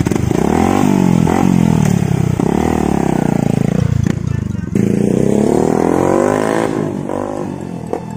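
Yamaha Sniper 150 motorcycle's engine revving as the bike rides off, its pitch climbing and dropping again and again as it is throttled and shifted, with a short break about four seconds in.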